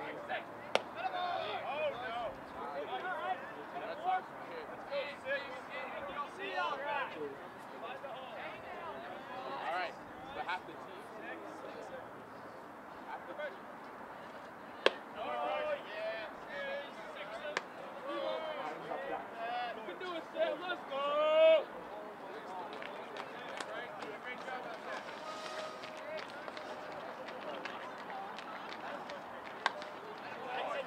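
Indistinct calling and chatter from players and spectators, with a louder shout about two-thirds of the way through, and a few sharp pops, the loudest about halfway in.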